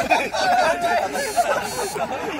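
A group of young men's voices chattering over one another with chuckles and laughter.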